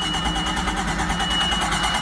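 5.0-litre MerCruiser V8 being cranked over by its starter motor, a steady rhythmic churn that stops near the end without the engine catching. A steady high-pitched warning tone sounds over it.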